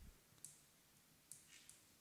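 Near silence: room tone with three faint, short clicks, one about half a second in and two close together near the end.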